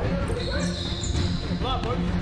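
Basketball bouncing on a gym court during a 1v1 game, with a thin high tone lasting about a second early on.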